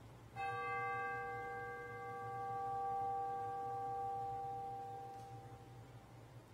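A single bell struck once about half a second in, ringing with several clear overtones and slowly fading over about five seconds. It is a memorial toll for a name just read aloud.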